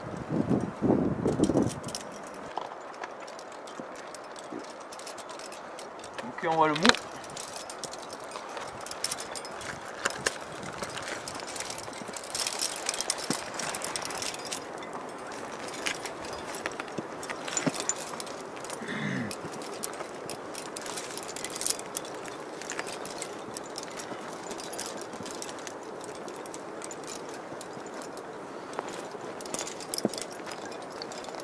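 Metal climbing gear on a harness rack, carabiners and quickdraws, clinking in short scattered rattles as a climber moves up rock, over steady background noise. A few brief voice sounds come at the start, about seven seconds in and near the middle.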